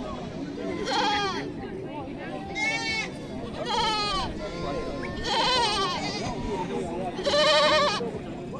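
Young goats bleating repeatedly, five quavering calls spaced about one to two seconds apart, over steady crowd chatter.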